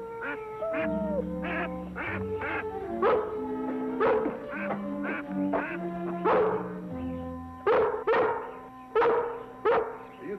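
Canada goose honking repeatedly, a dozen or so short calls, over orchestral background music with long held notes.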